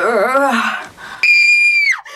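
A woman screaming in a high voice as voice-over for a cartoon character: first a short wavering shriek, then after a brief gap a long, very high, steady scream that falls away at its end.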